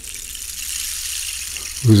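Running water, a steady bright hiss, with a man's voice coming in near the end.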